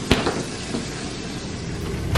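Refrigerator door pulled open, with one sharp click just after the start, then low steady background noise.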